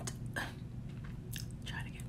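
Soft mouth sounds and breaths from a woman pausing between words, a few short clicks and puffs over a low steady hum.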